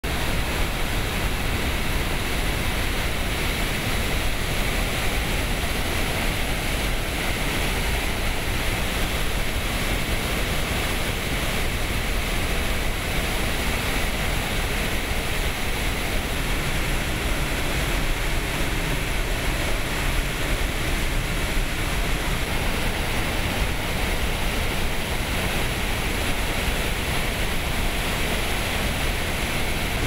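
Shihmen Dam's spillway discharging floodwater with the floodgates fully open, releasing as much water as they can: a loud, steady, unbroken rush of falling and churning water.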